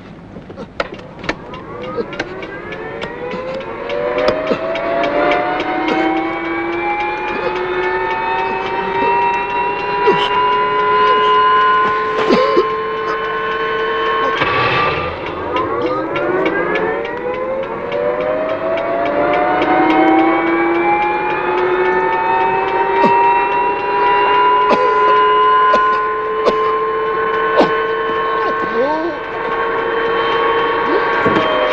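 Helicopter turbine engine starting: a whine that rises in pitch over several seconds and levels off, drops briefly about halfway through, then winds up again. A fast, even ticking runs throughout.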